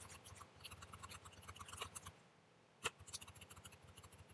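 Faint taps and scratches of a stylus writing on a tablet screen, a quick run of small clicks with one sharper click nearly three seconds in.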